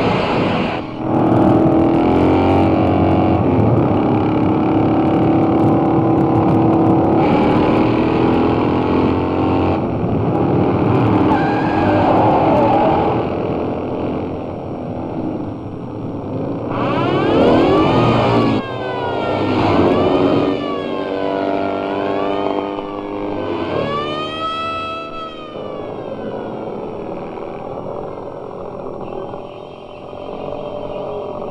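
Motorcycle engines running together. Past the middle they rev up and down again and again, in pitch sweeps that rise and fall.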